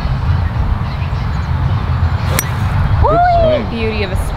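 A golf club strikes the ball once, a single sharp crack about two and a half seconds in, followed by a brief exclamation. A steady low rumble sits under both.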